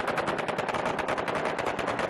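Automatic weapon fired in one long continuous burst, about ten shots a second.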